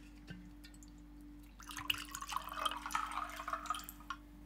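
Liquor poured from a bottle into a cut-crystal glass tumbler: a splashing, gurgling pour that starts about a second and a half in and lasts about two seconds, over a low steady hum.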